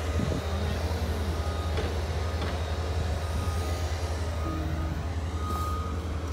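Steady low rumble of vehicle engines in the street below, with faint music over it.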